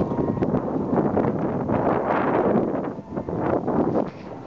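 Wind buffeting a handheld camera's microphone, an uneven rushing noise with a few small handling knocks and a brief lull about three seconds in.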